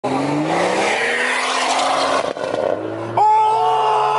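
Tuned BMW 340i's turbocharged 3.0-litre B58 inline-six heard from inside the cabin under hard acceleration. Its note climbs for about two seconds, breaks briefly at a gear change, climbs again, then steps up to a steady higher note near the end.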